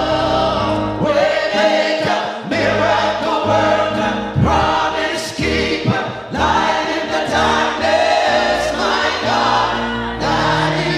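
A church praise team of men and women singing a gospel worship chorus in harmony through handheld microphones, with sustained low notes underneath.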